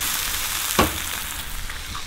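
A freshly cracked egg sizzling in a hot frying pan with chicken pieces and spinach, a steady hiss that eases slightly. A single short click a little under a second in.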